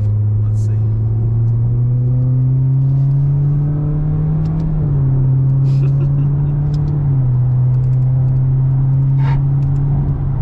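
The 2019 Toyota Corolla hatchback's 2.0-litre four-cylinder engine, heard from inside the cabin, pulling under acceleration. Its pitch rises steadily for about five seconds, then drops in a step just before halfway and again about seven seconds in, like upshifts of the manual gearbox, before running on steady.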